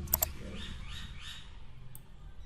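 Computer mouse button clicked, a quick double click just after the start, then a single lighter click near the end as a zoom box is dragged out. A steady low hum runs underneath.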